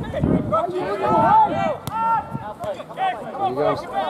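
Men's voices calling and shouting across a football pitch during play, with one sharp knock a little before halfway through.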